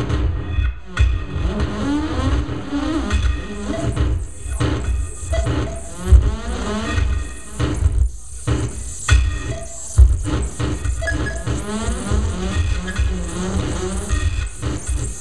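Live electronic music played on tabletop electronic gear: deep, uneven bass hits under repeated sweeping glides in pitch, with the strongest bass hits about six and ten seconds in.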